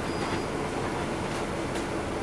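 Inside a rear seating area of a diesel transit bus moving slowly: the steady drone of its Caterpillar C13 engine and drivetrain, with a few short rattles.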